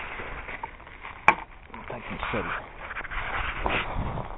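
Rustling and crunching of dry leaves and brush underfoot as someone moves through scrub, with a single sharp crack about a second in.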